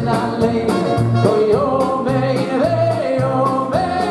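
A male lead singer sings a melody into a microphone over a live band, holding notes and stepping up in pitch, with bass notes and a steady drum beat underneath.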